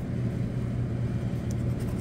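Scratch-off lottery ticket being scraped with a hand tool, faint, under a steady low hum.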